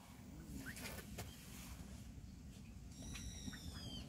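Steady low rumble of breeze on the microphone at the pond's edge, with a few faint clicks early and a high, thin call that falls slightly in pitch for about a second near the end.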